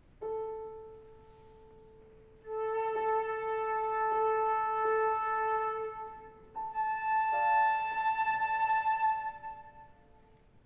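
Flute and piano sounding tuning notes: a single piano note rings and fades, then the flute holds a steady note at the same pitch for about three and a half seconds. After a short break the flute plays an octave higher over a few piano notes, stopping just before the end.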